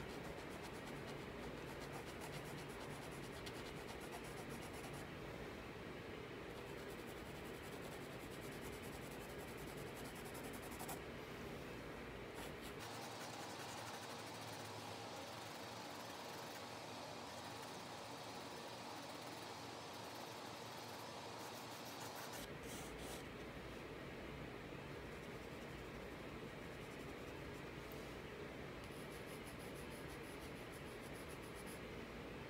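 Faint graphite pencil scratching and rubbing on drawing paper as lines are sketched in a portrait study.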